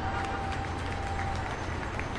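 Steady background hum and hiss, with a faint thin tone held for about the first second and a half.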